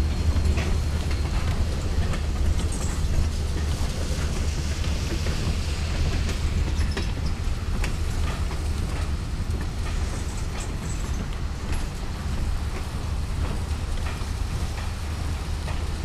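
Freight train's tank cars and covered hopper cars rolling past close by: a steady low rumble of steel wheels on rail, with a few light clicks.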